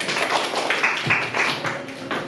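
A small group clapping by hand: many uneven claps.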